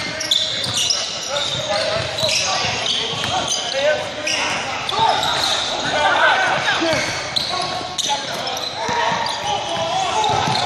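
Basketball game sounds in a gym with a hardwood floor: many short sneaker squeaks, the ball bouncing and players shouting, all echoing in the large hall.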